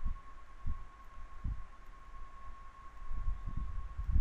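Soft, low, irregular knocks from a pen writing on a tablet, picked up through the desk by the microphone, over a steady thin electrical whine in the recording.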